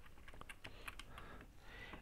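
Faint typing on a computer keyboard: a quick run of light key clicks.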